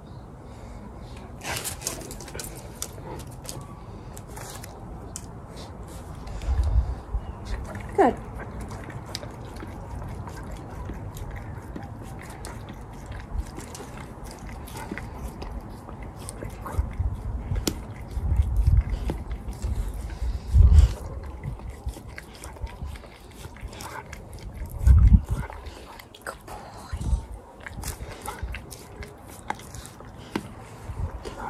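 Dog licking and chewing a treat through a plastic basket muzzle, making many small wet clicks, with a few louder low thumps as the muzzle knocks against the hand.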